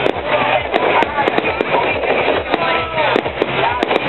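Aerial fireworks bursting and crackling in rapid succession, with many sharp pops.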